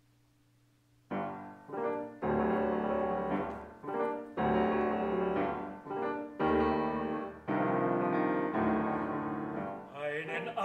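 Grand piano playing alone: a slow series of sustained chords, the first struck about a second in after near silence. These are the piano introduction to an art song, before the voice comes in.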